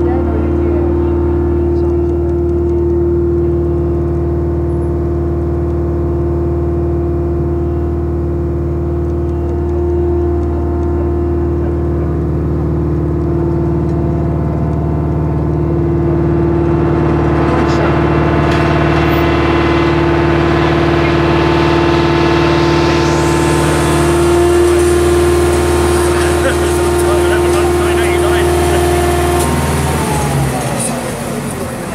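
An engine idling steadily: a deep, even hum at a constant pitch that shifts slightly about twelve and twenty-four seconds in, with a rushing noise building from about halfway through.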